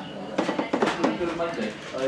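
Background chatter of other people talking in a pub bar, with a few light knocks and clinks.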